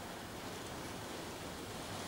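Faint, steady hiss of room tone, even throughout with no distinct strokes.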